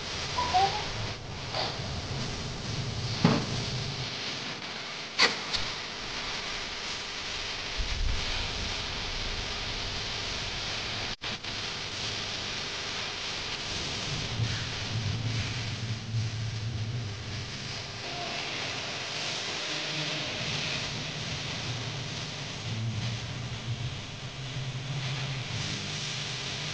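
Stick (rod) welder's electric arc crackling and hissing steadily, with a few sharp clicks in the first few seconds.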